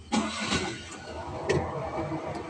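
A small truck's engine starting right at the start, then running steadily, heard from inside the cab. A sharp click comes about one and a half seconds in.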